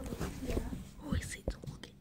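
A child whispering and speaking softly close to the phone's microphone, with a knock from handling the phone about one and a half seconds in.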